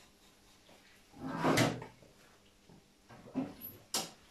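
A kitchen drawer sliding, loudest about a second in, followed by a softer knock and a sharp click near the end.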